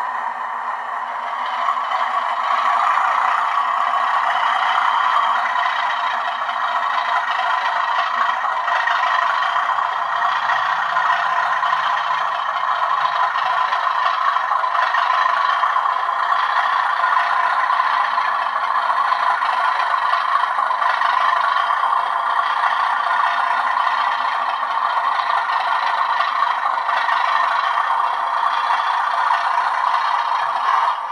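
TTS sound decoder in a model Class 37 diesel locomotive playing its diesel engine sound, steady and very loud through the model's small speaker, with the model's wheels rattling on the track as it moves slowly.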